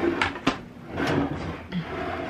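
A foil-lined ceramic baking dish being handled and slid across the countertop: scraping with a sharp knock about half a second in.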